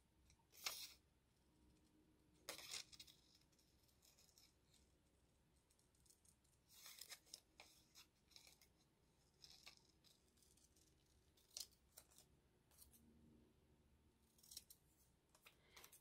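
Scissors snipping through a paper label: a series of quiet, short snips spaced irregularly, with pauses between cuts.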